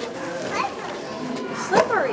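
Children's voices in a busy public space, with a short high-pitched cry near the end that is the loudest sound.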